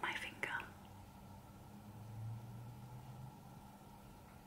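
Quiet room with a faint steady hum, and a few soft breathy sounds, like a whispered laugh, in the first half second.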